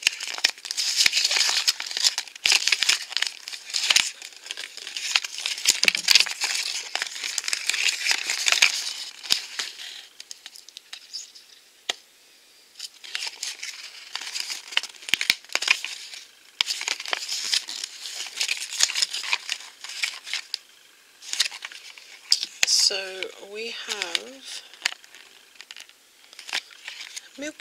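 Paper collector's checklist and toy packaging crinkling as they are unfolded and handled, in several long stretches with short pauses.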